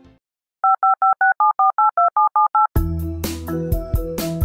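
Telephone keypad touch tones (DTMF) dialled in quick succession: about eleven short two-tone beeps in two seconds, after a brief silence. A keyboard music bed with a beat starts right after the last beep.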